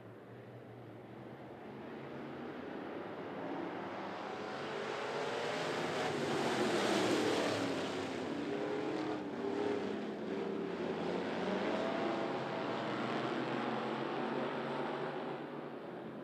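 A pack of street stock race cars running on a dirt oval, their engines revving up and down as they come past. The sound builds to its loudest about seven seconds in, then stays loud.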